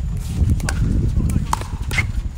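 Pickleball paddles hitting a plastic pickleball on the outdoor courts: a string of sharp, hollow pops at irregular intervals.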